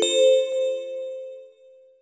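A single bell-like chime note struck at the start, ringing and fading out over about a second and a half.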